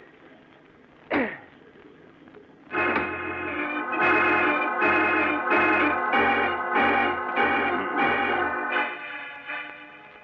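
Organ music bridge coming in about three seconds in: sustained chords that change about every half second, then fade out near the end. A single short sound comes about a second in, before the organ starts.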